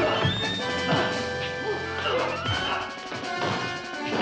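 Staged fistfight sound effects: a rapid run of punches and crashing blows, over orchestral fight music.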